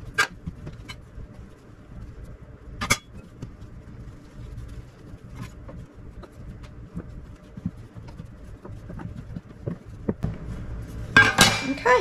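A steel bench scraper chopping through soft dough and knocking on a wooden countertop: a few sharp knocks, the loudest about three seconds in, with quieter taps and handling of the dough between.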